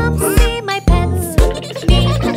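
Children's nursery-rhyme background music with a steady beat of about two strikes a second.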